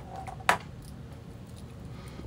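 A single sharp click about half a second in, as a plastic stamping supply is set down on the craft desk; otherwise only faint room noise.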